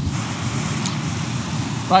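Sea surf washing in over coastal rocks at high tide, a steady rushing hiss with no break.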